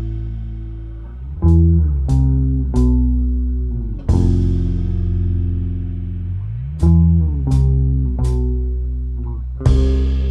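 Instrumental shoegaze-style indie rock with bass and electric guitar chords. The chords are struck in a repeating figure: three quick hits about two-thirds of a second apart, then a long held chord, with a sharp crash on each accent. There is no singing.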